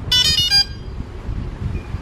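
A quick run of high electronic beeps, a few tones changing pitch within about half a second, from the DJI Phantom 3 drone system as the aircraft connects to its controller. A steady low rumble sits underneath.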